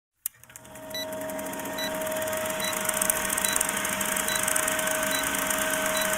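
Vintage film countdown leader sound effect: a film projector running with a fast, even clatter and a steady hum, a short high beep a little under once a second as the numbers count down, opening and closing with a sharp click.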